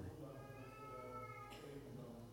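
A faint, drawn-out high-pitched voice lasting about a second, over quiet room tone.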